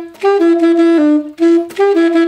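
Alto saxophone playing a phrase of short and held notes, mostly repeating written C sharp, with a brief step up to E twice and one note dropping to B about a second in.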